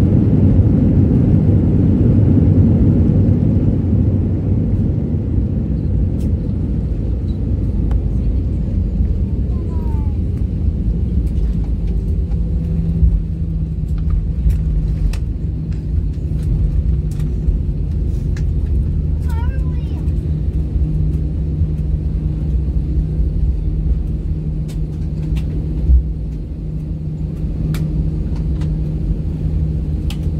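Airliner cabin noise as the jet rolls along the ground after landing: a steady low rumble of engines and wheels, louder for the first few seconds and then settling, with a steady low hum joining about twelve seconds in.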